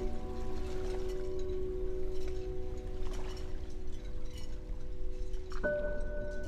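A struck chime or bell note that rings on and slowly fades. A new, higher chime note is struck near the end, over a steady low rumble.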